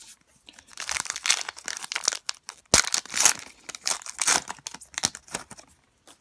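A trading card pack's wrapper being torn open and crinkled by hand: a run of crackling and rustling, with one sharp crackle near the middle.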